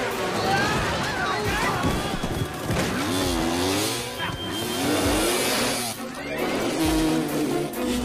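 Several dirt-bike engines revving, their pitch rising and falling, mixed with a film score.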